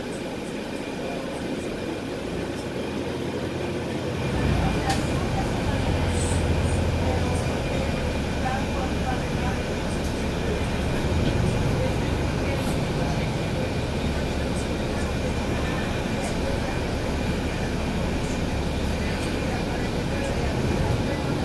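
Heard from inside the cabin, a NABI 416.15 transit bus's engine and drivetrain run as the bus pulls away, growing louder about four seconds in, then settle into a steady ride with road rumble and a faint high whine.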